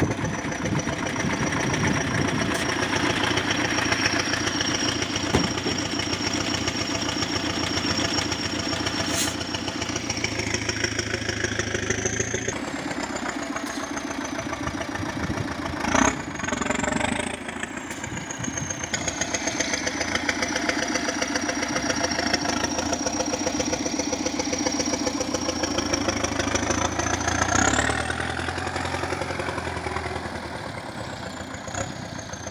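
Belarus MTZ-892.2 tractor's diesel engine running while it works the front loader, with a high whine that rises and falls as the revs change. A short knock sounds about halfway through, and the revs rise near the end.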